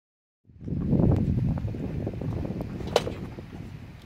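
Wind rumbling on the microphone, slowly fading, with one sharp crack about three seconds in.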